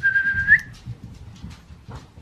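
A single high, steady whistle-like note about half a second long that rises sharply at its end, followed by soft low bumps and rustling.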